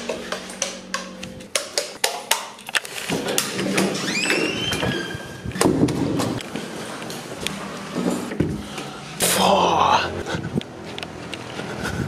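A door being unlatched and opened by its round knob: a run of clicks and knocks from the knob, latch and handling. There is a short squeak about four seconds in and a louder burst of noise a little before the end.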